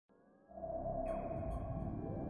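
Synthesized logo intro sting: a low electronic tone swells in about half a second in, with a falling glide and high shimmering accents.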